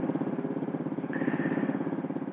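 Honda CB400SS single-cylinder four-stroke engine running at idle with an even, rapid pulsing beat. A faint thin high tone joins in about a second in.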